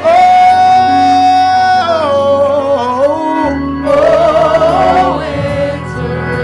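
Gospel worship singing: a voice holds one long note for about two seconds, then sings a falling phrase, pauses briefly, and sings another phrase.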